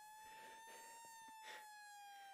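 Police siren wailing faintly: one slow rise in pitch that peaks about halfway through, then falls away.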